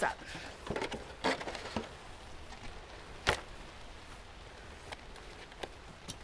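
Damp potting soil being scooped by hand from a steel bowl and dropped into a cut-down plastic milk jug: soft rustles and crunches over the first two seconds, then one sharp tap about three seconds in.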